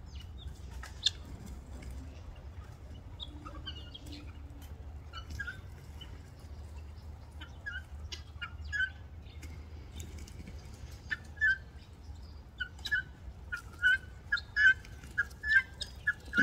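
Helmeted guineafowl and doves feeding and squabbling: short, repeated bird calls that come more often and louder over the last few seconds, with scattered wing flaps and scuffles, over a steady low rumble.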